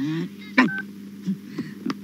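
Mobile phone keypad tone: one short two-note dialing beep as a key is pressed, a little over half a second in, with a few sharp clicks around it.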